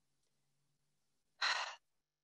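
A short audible breath, about a second and a half in, from a woman pausing between phrases of speech into a call microphone; the rest is near silence.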